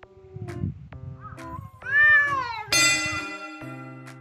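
Stray cat fight call: a long wailing yowl, like a crying baby, that rises then falls in pitch, breaking into a louder, harsh screech about two-thirds of the way in as the standoff erupts into a chase. The yowl is the sign of a cat in an aggressive, highly aroused state, confronting a rival.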